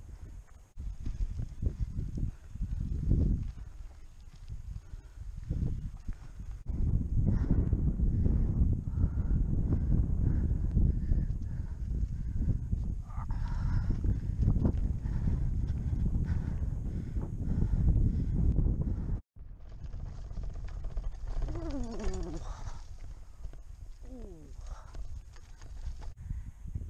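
Wind buffeting the microphone of a bicycle-mounted camera, with the rumble of tyres rolling over a rough dirt trail, rising and falling as the bike moves. A few short falling sounds come near the end.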